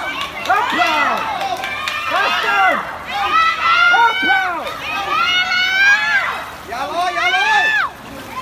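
Several spectators' voices shouting and cheering, high-pitched and overlapping, in long rising and falling calls with a short lull near the end.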